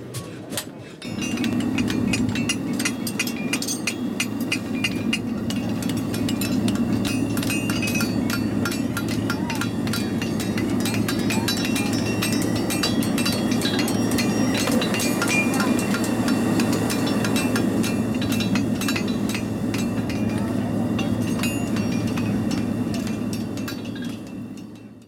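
Propane gas forge burning steadily, with irregular hammer blows and metallic clinks on anvils as farriers shape hot horseshoe steel. The sound fades out at the end.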